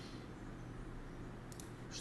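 Quiet room tone with a low steady hum, and a few faint computer-mouse clicks near the end.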